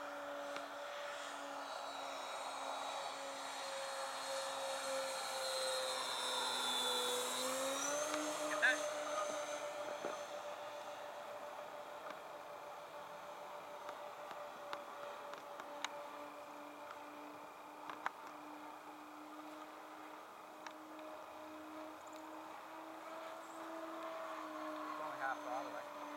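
Motors of a Hangar 9 Twin Otter radio-controlled model airplane in flight: a steady hum that grows louder as it passes close, loudest about seven seconds in. Its pitch dips and then rises a little around eight seconds in, then holds steady. A few faint clicks are heard.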